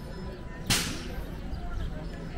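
A sudden short burst of hissing noise about two-thirds of a second in, sharp at the start and fading over about a third of a second, over a steady street background.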